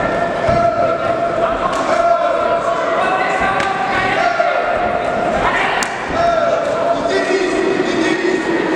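Gloved punches and kicks landing with dull thuds during a kickboxing bout, over shouting voices echoing in a large sports hall.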